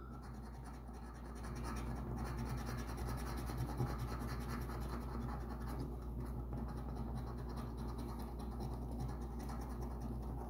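A coin scraping the rub-off coating from a paper scratch-off lottery ticket, uncovering the winning numbers. It is a steady, rapid scratching that grows louder about a second and a half in.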